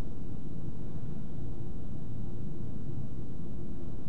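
Steady low rumbling hum of room background noise, even and unchanging throughout.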